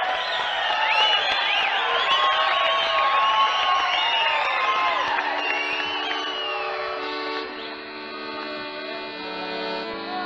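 Audience applauding and cheering at the end of a song, with many high whistle-like calls over the clapping. About five seconds in, the band comes in with a soft held chord as the applause dies away.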